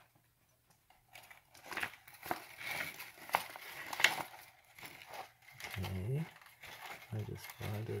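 The plastic trimmer head and opened casing of a Ryobi 18V cordless string trimmer being twisted by hand, giving a run of irregular crinkling clicks and crackles. This is an attempt to unwind trimmer-eaten wire from the head at the motor shaft, and the wire stays stuck.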